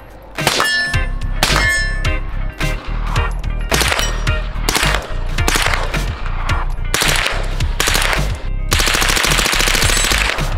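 Rifle gunfire at steel targets: single shots about every half second, some followed by a short ring of steel, then a rapid full-auto burst near the end. Background music with a steady bass runs underneath.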